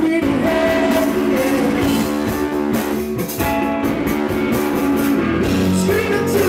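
Indie rock band playing live: electric guitars, bass and drum kit.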